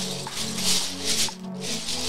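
Lego bricks rattling inside a plastic zip-lock bag, the bag crinkling as it is handled and opened, in three loud bursts over steady background music.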